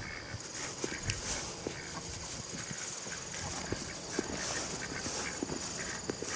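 Footsteps swishing through grass, heard as irregular soft ticks and rustles, with a steady high-pitched trill in the background from about half a second in.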